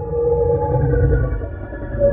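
A short electronic logo sting: a steady, held synthesized tone over a deep low rumble.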